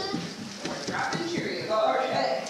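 Indistinct talking, with a child's voice among it and a few light knocks of movement.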